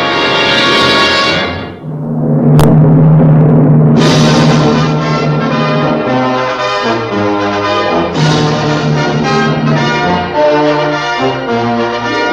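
Orchestral soundtrack music. A held chord dips about two seconds in and a sharp strike follows. The orchestra then comes back loud on a low held note, and a fuller section with changing notes enters about four seconds in.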